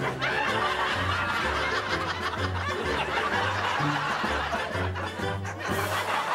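Upbeat background music with a stepping bass line, with people laughing over it.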